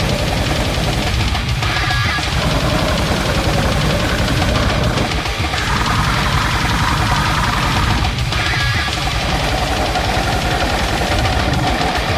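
Brutal death metal / goregrind playing loud and dense: very fast, even kick-drum strokes under heavily distorted guitars.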